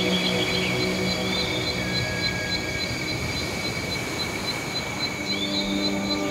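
Ambient music: a soft sustained drone that thins out mid-way and swells back near the end. Under it runs a steady high pulsing like crickets, about four beats a second, with a few short bird-like chirps.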